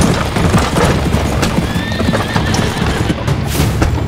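Horses galloping, a rapid clatter of hooves, with a horse whinnying briefly in the middle, under dramatic background music.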